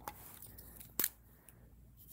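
A fountain pen being picked up and handled, with one sharp click about a second in and faint rustling around it.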